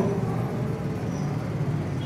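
Steady background rumble and hiss with a low hum underneath; no distinct events stand out.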